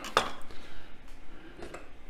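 A sharp metallic click just after the start, then faint light clinks of metal utensils as a pair of poultry scissors is picked up.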